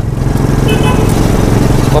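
Small engine of a homemade mini car built from scrap, running steadily while the car is under way in street traffic.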